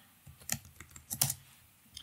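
A handful of faint, irregularly spaced keystrokes on a computer keyboard.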